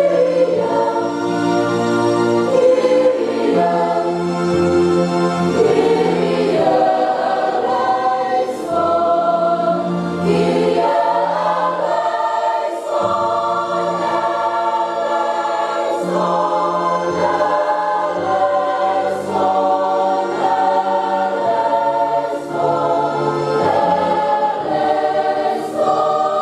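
A church choir and congregation singing a hymn together over steady held accompaniment notes.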